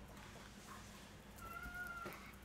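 A cat's single short, faint meow, a steady call about one and a half seconds in, over quiet room tone.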